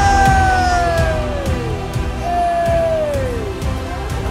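Comic 'fail' sound effect of two long, slowly falling horn notes, in the manner of a sad-trombone sting, marking a dropped catch. It sounds over a steady low background murmur.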